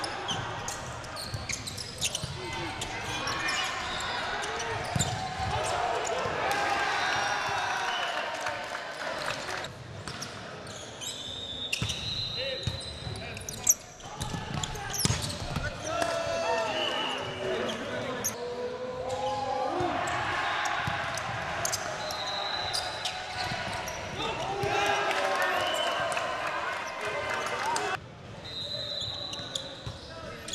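Indoor volleyball play in a gym: players calling and shouting, sharp smacks of the ball being served, set and hit, with the loudest hit about 14 seconds in. Three short, high referee's whistle blasts come about 12, 23 and 29 seconds in, and everything echoes in the large hall.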